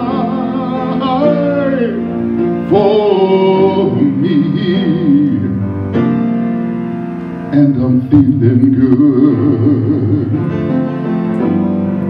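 A man singing a song with vibrato on held notes while accompanying himself on a grand piano; the voice drops out briefly past the middle and comes back in.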